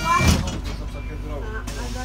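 Bus doors shutting with a thud about a quarter-second in, as a steady high tone that was sounding stops. The bus's engine hums low under faint passenger voices.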